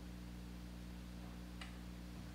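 Faint steady electrical hum from an idling guitar amplifier, with one faint click about one and a half seconds in.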